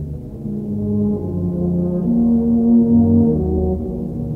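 Brass band playing a slow passage of long-held low notes, swelling to its loudest about two and a half seconds in and easing off near the end. The sound is dull, with little treble.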